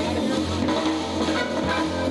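Live instrumental band playing: electric guitar with electric bass and drums, a dense, continuous sound with a strong steady bass line.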